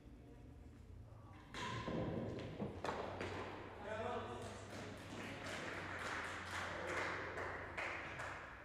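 Indistinct voices mixed with a few knocks, starting suddenly about a second and a half in.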